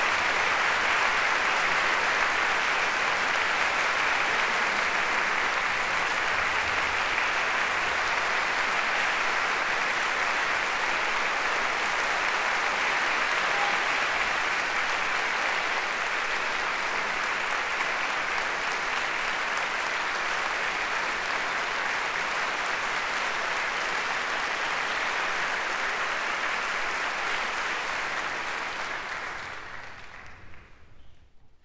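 Concert hall audience applauding steadily, the applause dying away near the end.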